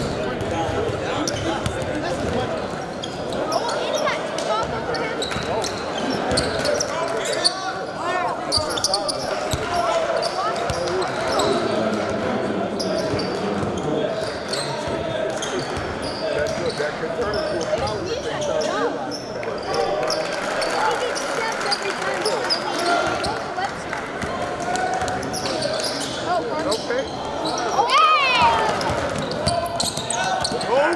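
Basketballs bouncing on a hardwood gym floor over steady spectator chatter, echoing in a large gym, with a short squeak near the end.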